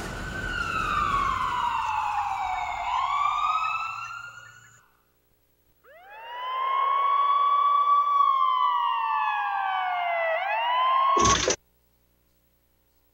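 Ambulance siren wailing in slow falling and rising sweeps. It fades out about five seconds in, starts again about a second later, and cuts off abruptly after a brief noisy burst near the end.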